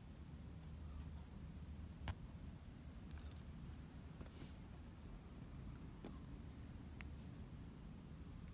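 Low, steady hum with a few faint, sharp clicks and taps, the loudest about two seconds in: metal tools and parts being handled at a bicycle disc brake caliper.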